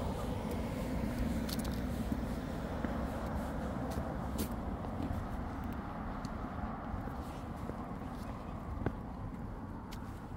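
Steady low rumble of road traffic, with a car engine's hum fading over the first few seconds. There is one sharp tick near the end.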